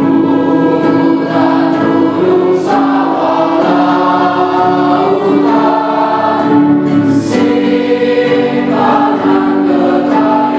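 A mixed choir of girls and boys sings in parts, holding sustained chords that shift from note to note. Two brief hisses from sung consonants cut through, about two and a half seconds in and again about seven seconds in.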